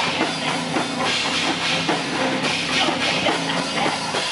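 Live stoner/sludge metal band playing loud: electric guitar and a drum kit with regular, heavy drum hits under a constant wash of cymbals.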